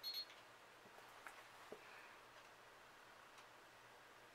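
Near silence: quiet room tone with a short click right at the start and a couple of faint ticks about a second and a half in, from handling a makeup brush and eyeshadow palette.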